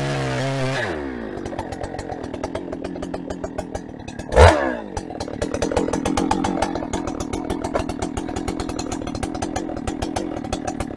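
Holzfforma 395XP two-stroke chainsaw at full throttle in the cut for about the first second, then dropping to a steady, pulsing idle as the throttle is released and the bar comes out of the log. About four and a half seconds in, one short, loud rev of the throttle, then it idles again.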